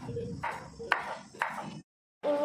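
Kitchen knife chopping green beans on a wooden cutting board: three sharp strikes about half a second apart, each with a short ringing ping. The sound cuts off abruptly near the end.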